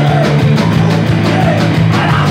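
A rock band playing loud and live, with electric guitar, bass guitar and drum kit.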